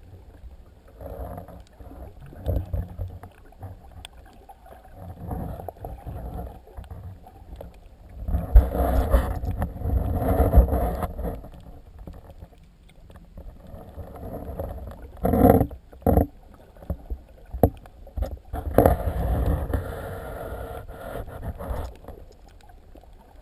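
Water rushing and sloshing against an underwater camera housing as a snorkeler swims, in irregular swells with a few sharp knocks near the middle.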